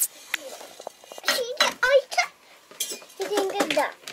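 A young child's high voice in two short stretches, with a few light clicks and clinks in between.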